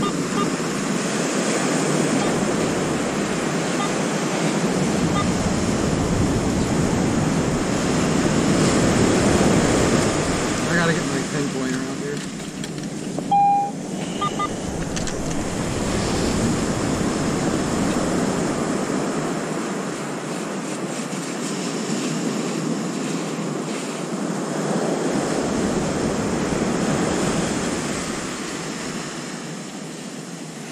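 Surf washing up and receding on a sandy beach in slow swells, with wind on the microphone. About thirteen seconds in, a metal detector gives a short, loud target tone.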